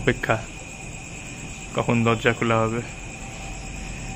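Crickets trilling steadily on one high pitch, with a person's voice briefly about two seconds in.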